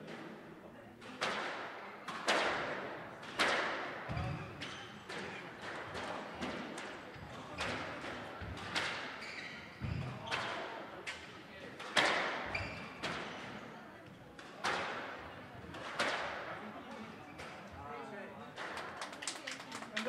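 Squash ball struck by rackets and hitting the court walls during a rally: sharp smacks echoing in the court roughly once a second, with a few deeper thuds among them.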